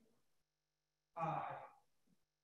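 A person sighing aloud: one voiced breath about a second in, falling slightly in pitch and fading out, after a brief gap of dead silence.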